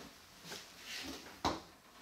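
Footsteps and light handling noises in a small room, with one sharper knock about one and a half seconds in.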